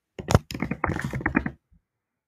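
Computer keyboard typing: a quick run of keystrokes lasting about a second and a half, with one louder key-strike near the start.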